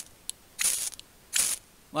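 Ferrocerium fire steel scraped twice along the reground spine of a Mora knife: two short scrapes about a second apart. The spine's freshly squared edges are now sharp enough to strike sparks from the rod.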